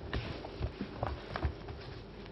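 Scattered light clicks and knocks, about five in two seconds and irregularly spaced, over a steady low room hum.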